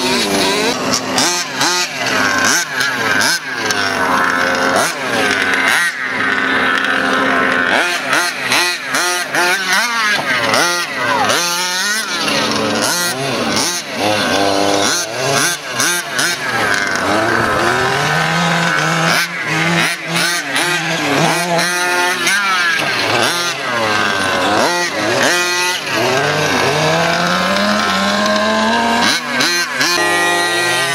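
Engines of 1/5-scale King Motor X2 petrol RC trucks, small two-stroke motors, revving up and down over and over as the trucks are driven hard. The pitch keeps rising and falling, with two engines often heard at once.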